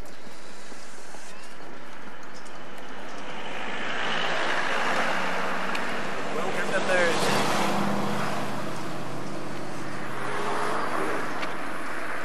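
A car passing on the road, its engine and tyre noise swelling from about a third of the way in, loudest just past the middle, then fading near the end.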